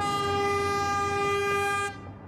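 Diesel locomotive horn sounding one long, steady blast of about two seconds on a single note, cut off sharply at the end.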